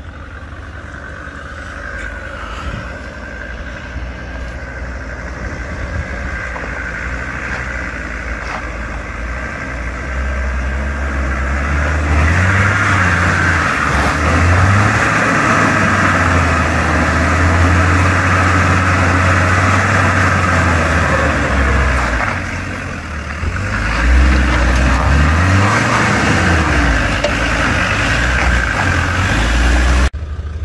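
Land Rover Discovery 4x4 crawling up a rough gravel track and coming close, its engine note rising and falling with the throttle. The sound grows louder as it nears, eases off briefly about two-thirds of the way through, then revs up and down again.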